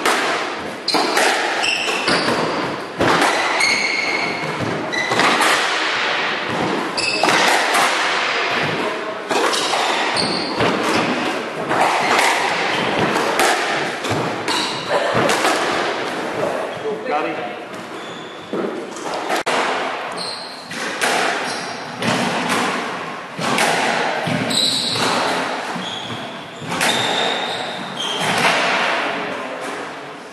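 Squash rally: repeated sharp smacks of the ball off rackets and the walls, echoing in the enclosed court, with short high squeaks from shoes on the wooden floor.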